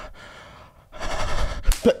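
A man's breathy gasps and exhales, louder from about a second in and turning into a short laugh at the end, with a sharp click just before the laugh.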